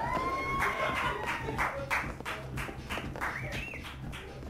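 Disco dance music with a pulsing beat for a stage dance, a long held high note that rises at its start, and sharp claps throughout.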